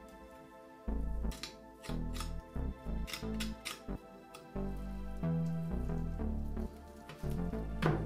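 Background music with low, steady bass notes, over which come a few light clicks and knocks of a knife and meat being handled on a cutting board.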